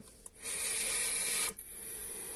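Airy hiss of a direct-lung drag on a Freemax Mesh Pro sub-ohm vape tank, its 0.2-ohm double mesh coil fired at 80 watts. The hiss lasts about a second, starts and stops abruptly, and is followed by a fainter hiss of breath.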